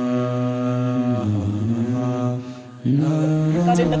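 A man's voice chanting long, held notes in three drawn-out phrases, with short breaks between them. A spoken voice cuts in just at the end.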